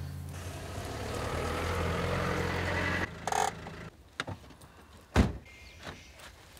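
A car running, heard from inside the cabin: a steady low engine hum with a rising rush of noise that cuts off about three seconds in. After it come a short tone, a few faint knocks and a sharp thump near the end.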